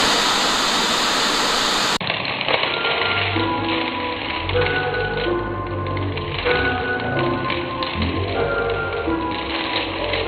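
A burst of video static hiss for about two seconds that cuts off abruptly, followed by background music of held, steady notes over low tones.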